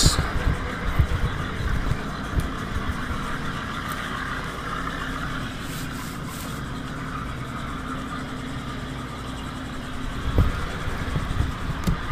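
Steady outdoor background hum, like a distant motor, with irregular low rumbles on the microphone near the start and again about ten seconds in.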